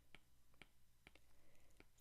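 Near silence with a few faint, sparse clicks: a stylus tapping on a tablet screen while numbers are handwritten.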